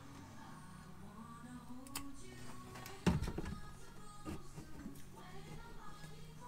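Faint music from a radio, with a few light knocks and clicks as a gauge is pushed into a dash-mounted gauge pod; the sharpest knock comes about three seconds in.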